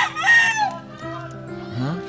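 A rooster crowing, its long call ending in a falling note about half a second in.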